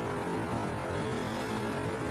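A steady droning background bed with no speech, the music layered under the talk carrying on through a pause.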